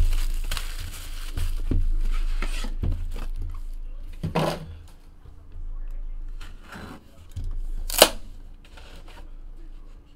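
Plastic shrink wrap being torn and crinkled as a sealed trading-card box is unwrapped, loudest in the first few seconds, then softer rustling. One sharp click about eight seconds in.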